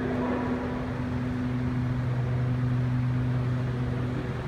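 A steady low mechanical hum with a constant low tone over a faint noisy wash, the kind a running fan or ventilation unit gives.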